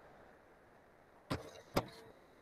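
Two sharp computer mouse clicks about half a second apart, the second the louder, over faint steady room hiss.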